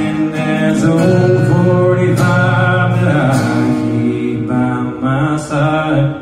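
Acoustic guitar strummed live through a PA, chords ringing out between sung lines.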